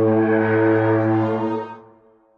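A low, sustained brass note from Hidden Path Audio's Battalion sampled brass library for Kontakt, played from a keyboard. It holds steady, then fades away near the end.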